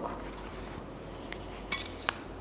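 A yoga block set down against the hard floor: one short, sharp clack near the end.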